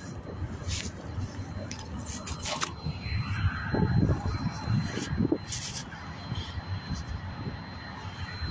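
Phone microphone handling noise as the phone is picked up off the ground: a few short knocks and rubs over a steady low rumble of wind on the microphone.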